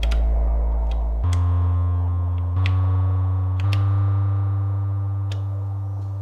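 Analog synthesizer playing low, sustained notes from mixed oscillator waveforms. New notes step up in pitch about one, two and a half, and three and a half seconds in, each starting with a click. The last note rings on and slowly fades.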